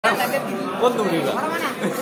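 People talking over one another, speech and chatter.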